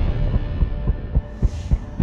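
Helicopter rotor thumping over a low rumble, about three beats a second.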